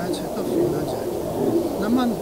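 A pigeon cooing, a few low coos over a man's voice.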